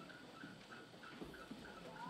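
Near silence: room tone, with faint light ticks about four times a second.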